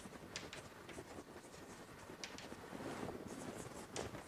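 Chalk writing on a blackboard: a faint series of short taps and scratches as letters are written.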